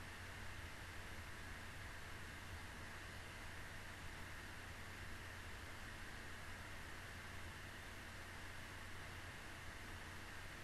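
Steady hiss with a faint low hum underneath: the microphone's noise floor and room tone, with no distinct sound event.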